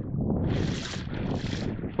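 Water washing along a kayak's hull with wind on the microphone: a steady rushing hiss that swells twice.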